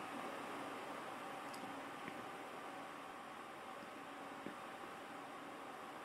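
Quiet room tone: a faint steady hiss, with a faint tick about a second and a half in and another near four and a half seconds.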